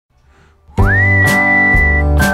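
Intro music that starts under a second in: a whistled melody slides up to one long high note over strummed acoustic guitar, about two strums a second.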